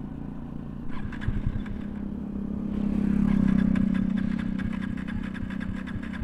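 A vehicle engine hums steadily, swells louder and then fades away near the middle, with a few light clicks.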